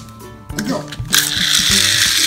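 Three Hot Wheels pull-back toy cars let go together, their wound-up spring motors whirring and the small wheels running on a tile floor. The whirring starts suddenly about a second in and stays loud and steady.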